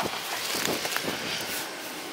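Steady outdoor background hiss with a couple of faint light clicks, and no engine running.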